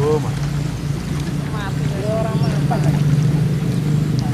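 A motor running with a steady low drone, under the chatter of distant voices.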